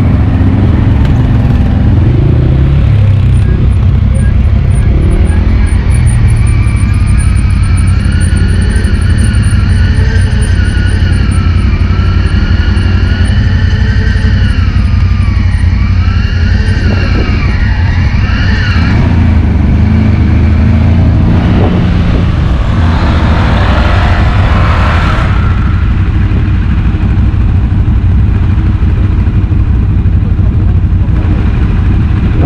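Quad bike (ATV) engines running as the machines ride, a loud, steady low rumble. Through the middle stretch a whine rises and falls in pitch with the throttle, and a short burst of harsher noise follows about three quarters of the way through.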